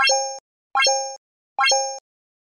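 Three identical end-screen pop sound effects, about 0.8 s apart. Each is a quick rising sweep that settles into a short two-note tone, one for each Like, Subscribe and notification-bell button that pops up.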